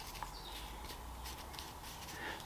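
Faint scratchy strokes of a small paintbrush working French polish (shellac) into card; the bristles are stiff with old dried polish.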